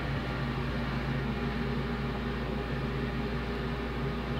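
A steady low mechanical hum under an even hiss, the background noise of some machine running in the room.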